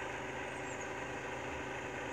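A steady mechanical hum with faint constant tones, unchanging throughout.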